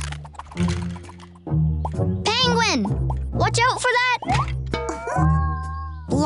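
Children's cartoon music with a pulsing bass line, under wordless cartoon character vocal sounds that swoop up and down in pitch and playful plopping sound effects.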